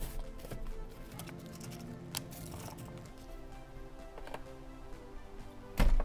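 Background music of soft held tones, with a few faint clicks and a short loud burst near the end.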